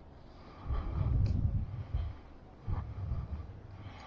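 Low rumbling noise on the microphone in two bursts, a longer one about a second in and a shorter one near three seconds.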